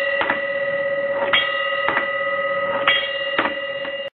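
Homemade electric bell: a metal pot rung repeatedly by a motor-driven striker, with about six sharp, irregularly spaced hits, each renewing a sustained metallic ringing that carries on between strikes.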